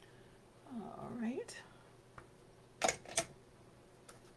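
A short wordless murmur from a woman's voice about a second in, then two sharp plastic clicks about half a second apart near the end, from a hand-held tape-runner adhesive dispenser being handled.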